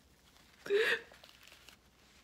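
A woman crying: one short sob, about two-thirds of a second in.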